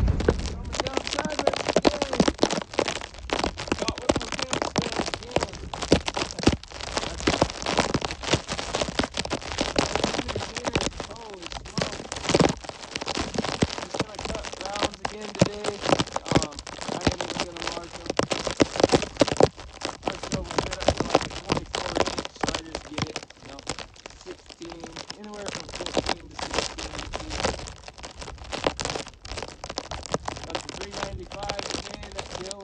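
Dense, irregular crackling and popping on the microphone from a waterproof phone case soaked by falling snow, running throughout.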